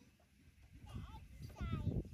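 A young child's high-pitched voice vocalizing without words, growing louder in the second half, over a low rumbling noise.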